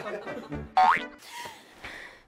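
Film soundtrack with a short rising pitched glide about a second in, the loudest moment, over music that fades away near the end.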